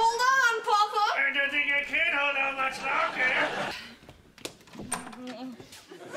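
A high-pitched voice exclaiming, words unclear, for the first three seconds or so, then a few sharp clicks and a short low voiced sound near the end.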